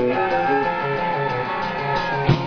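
Live punk rock band playing loud with distorted electric guitar: a repeating riff breaks off just after the start and the guitar holds one long ringing chord, with only light drumming underneath.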